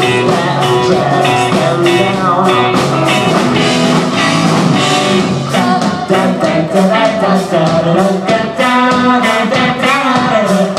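Live rock band playing a song: drum kit keeping a steady beat under electric guitars and electric bass, with vocals sung over it.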